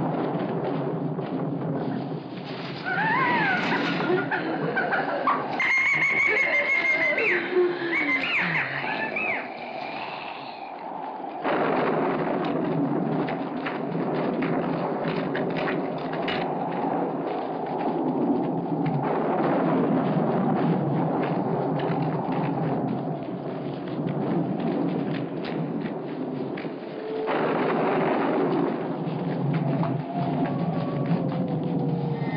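Film soundtrack with a dense, steady backdrop of sound. From about three to ten seconds in, a run of high animal howls and yelps rises and falls in pitch.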